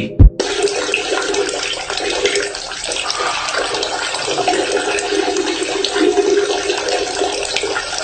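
A steady stream of liquid splashing into toilet water, the sound of someone peeing. It starts abruptly and runs on evenly.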